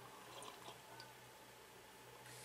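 Faint sipping of coffee from a mug: a few small wet slurping clicks in the first second, over a steady low hum.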